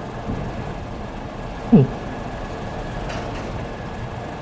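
Steady background room noise of a lecture space, with one short falling "hmm" from a man a little under two seconds in.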